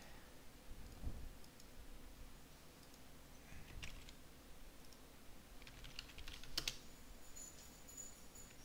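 Faint computer keyboard keystrokes as a short password is typed, with a few scattered clicks; the sharpest click comes a little after six seconds in.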